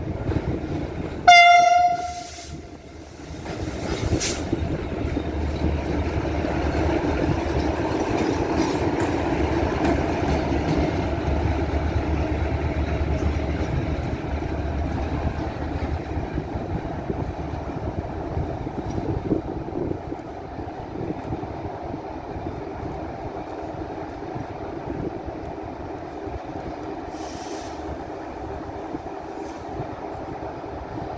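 A locomotive sounds one short, loud horn blast about a second in, then rumbles past along the rails, the noise easing off over the second half as it moves away.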